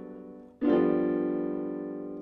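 Electronic keyboard played with a piano sound. A held chord fades out, then a new chord is struck about half a second in and held, slowly dying away.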